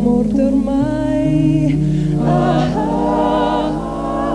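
Six-voice close-harmony vocal group singing held chords without words. The harmony shifts about a second in and again past the middle, moving up to a higher chord.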